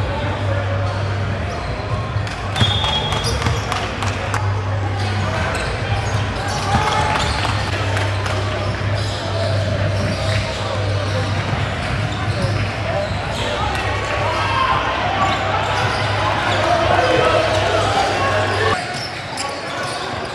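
A basketball bouncing on a hardwood gym floor, in repeated sharp thuds, under echoing voices of players and spectators. A steady low hum runs beneath and stops near the end.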